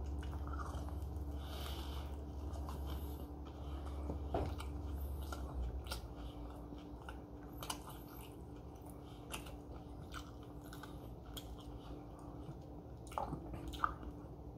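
A person chewing a mouthful of grilled turkey wrap close to the microphone, with soft wet mouth clicks scattered throughout. A low steady hum underneath fades out about five and a half seconds in.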